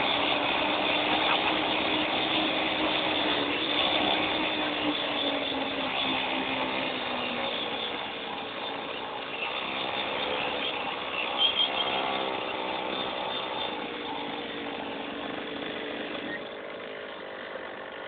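Mini-moto's small engine running. Its pitch eases down over the first several seconds, rises again about ten seconds in, and the sound grows fainter toward the end.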